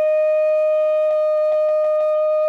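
A wind instrument holding one long, steady note in a piece of Andean toril music, with a few faint clicks in the second half.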